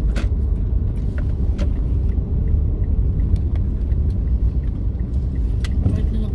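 Steady low road rumble of a moving car heard inside the cabin, with a few light clicks scattered over it.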